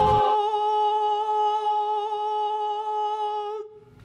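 A person humming one long steady note, with a slight waver, that cuts off shortly before the end.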